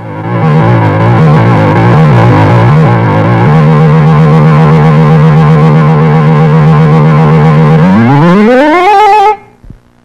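Heavily distorted music sting for a TV station logo: a dense, buzzy chord that wobbles in pitch for the first few seconds and then holds a steady note. Near the end the whole sound sweeps upward in pitch and cuts off suddenly.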